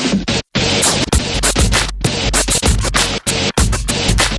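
Turntable scratching: a vinyl record worked back and forth by hand and chopped into short stabs by the mixer's crossfader, with deep bass underneath. The sound cuts out completely for a moment about half a second in.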